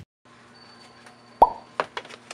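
Plastic ring binder handled on a desk: one sharp knock with a quick drop in pitch a little past the middle, then two lighter clicks near the end, over a faint steady room hum.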